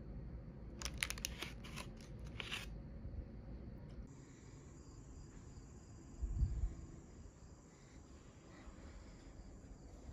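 A paper pastry bag crinkling, a quick run of crackles over about two seconds. Later there is a faint steady high whine and a single soft low thump.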